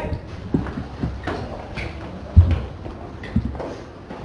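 A class of children's feet thumping and shuffling on the ground as they carry out an about-turn drill command: a handful of uneven thumps, the loudest a little past the middle.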